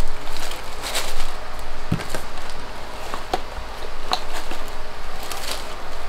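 Rustling and crinkling with scattered light clicks and taps as items are handled and pushed into a gift basket packed with shredded paper filler.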